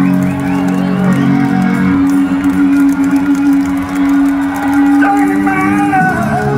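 Live rock band playing loudly through a hall PA, heard from the crowd, with an electric guitar holding a long steady note for several seconds and wavering higher notes over it near the start and the end.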